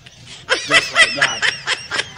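A person laughing in a quick run of short, high-pitched ha-ha bursts, starting about half a second in.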